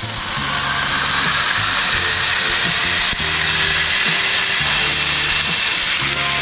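Ground beef smash burger patties sizzling on a hot cast iron griddle while being pressed flat with a cast iron press: a steady hiss. Background music with sustained low chords changing about once a second plays under it.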